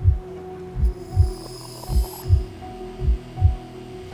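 Film soundtrack: a low heartbeat-like double thump repeating about once a second, four pairs in all, over a steady humming drone. A faint high shimmer rises in the first half.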